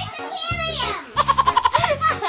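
High, squeaky chipmunk-style voices from people who have breathed helium from a foil balloon, with a quick string of high-pitched giggles in the second half. Background music with a steady bass line runs underneath.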